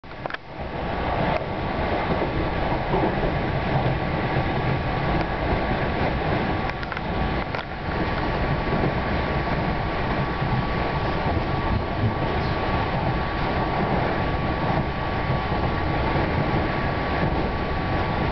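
Passenger train running at speed, heard from inside the carriage: a steady rumble of wheels on the track with a faint steady whine. A few light clicks come in the first eight seconds.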